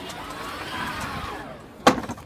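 Steady background hiss, then a single sharp knock near the end.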